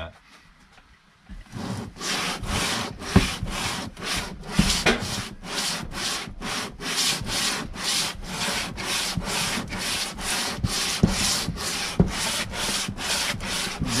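Aluminum Jeep 3.7L cylinder head being slid by hand over 220-grit self-adhesive sandpaper on a flat bench, decking its gasket face under its own weight: rhythmic gritty scraping strokes, about two to three a second, starting about a second and a half in, with an occasional sharper click.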